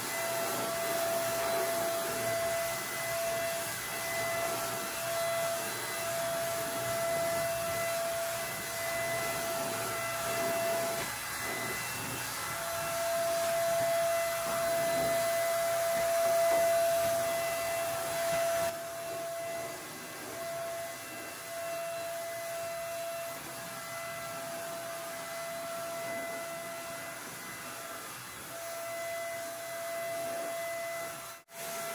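Wagner paint sprayer's turbine running steadily with a constant high whine over a hiss while paint is sprayed. It drops a little in level about two-thirds of the way through.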